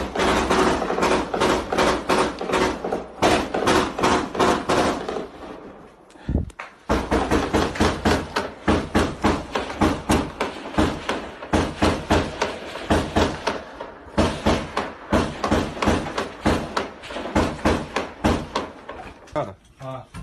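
Automatic gunfire at close range: long strings of rapid shots, several a second, with a short break about six seconds in.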